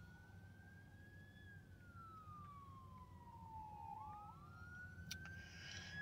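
A faint siren wailing, its pitch sweeping slowly up and down: a long slow fall, then a quick rise again about four seconds in. A single faint click comes about five seconds in.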